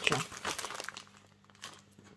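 Clear plastic packaging bag crinkling as it is handled, mostly in the first second, then fading to quiet.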